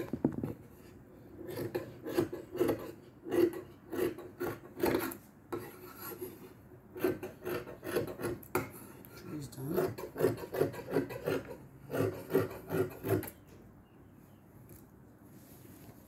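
Tailor's shears cutting through stretch lace net fabric on a table: a run of repeated snips with brief pauses, stopping about 13 seconds in.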